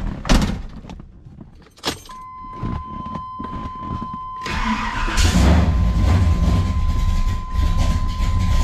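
A car door thud and a click, then a steady dashboard warning tone. About halfway through, the starter cranks and the Corvette's engine catches on a cold start and runs with a loud low rumble; the owner says she is grumpy when first started.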